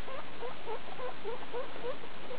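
Skinny (hairless) guinea pigs squeaking in short, rising chirps, about four a second, over a steady background hiss.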